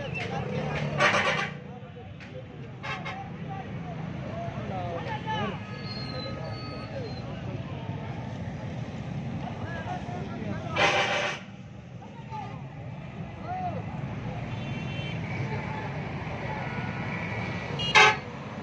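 Busy market-street traffic: a steady low vehicle rumble, with a crowd's voices in the background and vehicle horns sounding. Two loud horn blasts stand out, about a second in and about eleven seconds in, with fainter honks in between.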